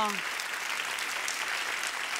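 Audience applauding steadily for a dance performance, with a voice trailing off right at the start.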